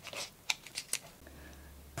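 Faint crackling and a few small clicks of a stiff cardboard coffee-cup strip being rolled up tightly in the fingers. A low steady hum comes in a little past halfway.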